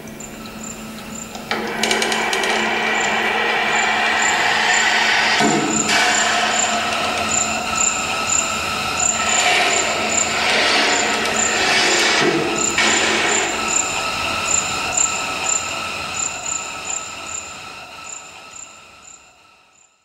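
Bass clarinet and accordion playing a dense, sustained contemporary chord texture with a regular patter of short high chirps above it, swelling sharply about a second and a half in and then fading away to silence at the end.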